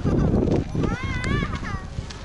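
Loud, irregular low rumble of wind buffeting the camera microphone outdoors. About a second in, a high-pitched voice briefly calls out among the visitors.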